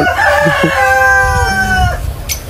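A rooster crowing: one long call lasting almost two seconds.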